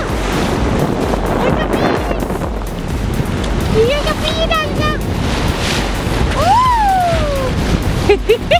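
Steady rush of water and wind as a sailboat moves through the sea, its bow wave hissing against the hull. High excited voices squeal over it, with short squeaks around the middle and one long rising-then-falling "woo" near the end.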